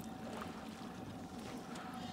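Lake water lapping softly against the side of an aluminum fishing boat.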